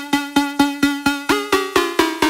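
Tech house music from a DJ set: a repeating pitched percussion hit, about four a second, each hit ringing briefly on the same note. About a second and a half in, a second, higher note joins the pattern.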